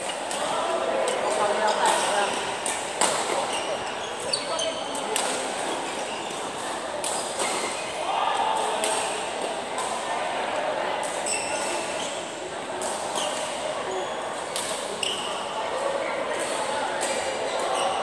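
Badminton rackets striking shuttlecocks in a large, echoing indoor hall: sharp hits at irregular intervals, some from neighbouring courts, with short high squeaks of shoes on the court floor. Voices of players chatter throughout.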